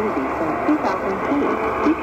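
A talking voice from an AM medium-wave station on 840 kHz, played through the Qodosen DX-286 portable radio's speaker. It sounds thin and muffled from the narrow AM audio band, over a steady hiss of static.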